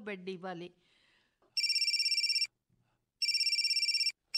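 Telephone ringing as a radio-drama sound effect: two rings, each a little under a second long, with a short pause between them.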